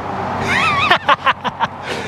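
A car passing by on the street, its road noise swelling up and holding, with a short high-pitched laugh about halfway through.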